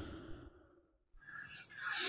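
The tail of an intro whoosh effect fading out, a brief silence, then a man's breath drawn in, growing louder just before he starts to speak.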